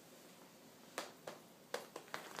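Four sharp, short clicks or taps in the second half, close together.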